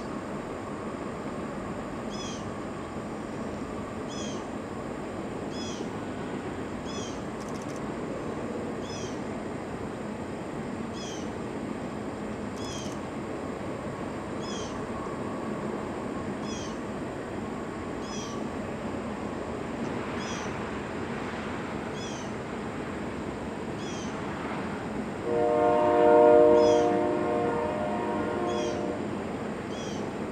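Freight train rolling steadily across a high steel trestle, heard from a distance. About 25 seconds in, a locomotive air horn sounds one long chord of several tones lasting about four seconds, loudest at its start.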